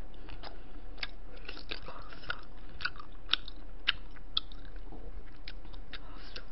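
Close-miked chewing and mouth sounds of a person eating, with irregular small clicks and a few sharper ones about three to four and a half seconds in.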